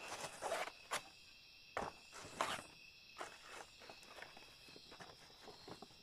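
Banana leaves rustling and crinkling as they are handled, in several short bursts, loudest in the first couple of seconds. Night insects chirr steadily and high-pitched underneath.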